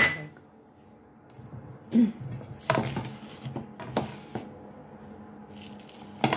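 A utensil clinking and scraping against a ceramic mixing bowl as sprinkles are stirred into cookie dough: a handful of short knocks about two to four and a half seconds in.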